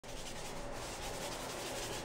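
Steady rubbing of a paint applicator working brown paint over a wall surface.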